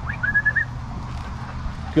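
A short human whistle, quickly rising and then held on one high note for about half a second, calling the dogs to come along.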